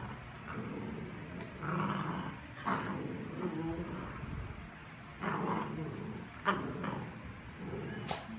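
Two Cavalier King Charles Spaniels play-fighting, giving about five short, sharp play growls and yips.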